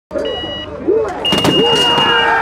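Electronic race start signal: a short high beep, then a longer beep of the same pitch about a second later, with a few sharp knocks as the long beep sounds. Voices run underneath.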